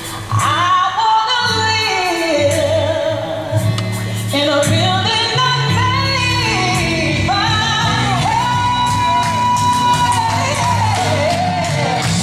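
A female gospel soloist sings live over keyboard and percussion accompaniment. Her voice slides up and down through runs without clear words, then holds one long high note for about three seconds in the second half.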